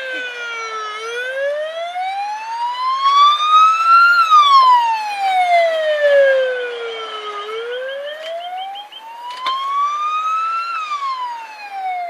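Ambulance siren on wail, sliding slowly up and down in pitch, about three seconds each way, over two full cycles. It is loudest about four seconds in, with a few short knocks later on.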